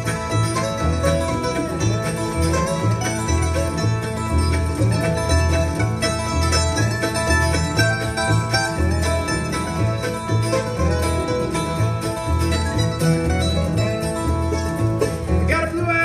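Bluegrass string band playing an instrumental break between verses: bowed fiddle carrying the melody over strummed acoustic guitar, with plucked upright bass notes about twice a second.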